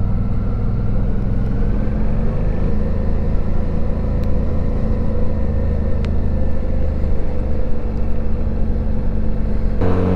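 Suzuki V-Strom 650's V-twin engine running steadily at low town speed, heard from the rider's seat, its pitch edging up slightly a few seconds in.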